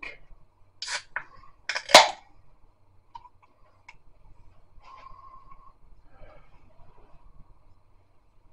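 A beer can's pull tab being cracked open, a sharp pop with a short hiss about two seconds in, after a few small clicks of handling. Faint handling sounds follow.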